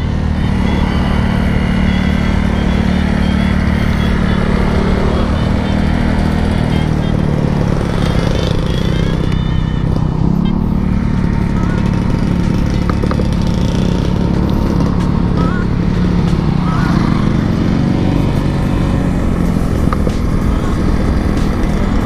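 Yamaha Aerox 155 VVA scooter's single-cylinder engine running steadily, its pitch stepping up a little about halfway through.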